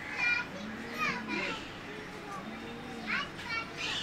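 Faint children's voices: a few short, high-pitched calls and chatter of children playing.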